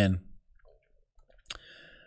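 The end of a spoken word, then quiet, then a single sharp click about one and a half seconds in, followed by a faint breath.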